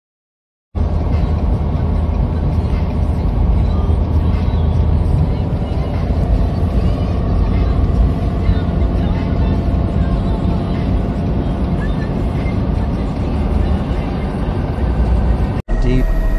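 Car driving along a flooded highway, heard from inside the cabin: a steady low rumble of engine, tyres and water that starts about a second in and cuts off suddenly near the end.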